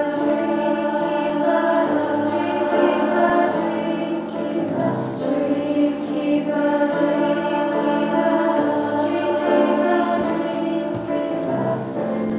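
A school choir singing in parts, holding long notes that change every second or two.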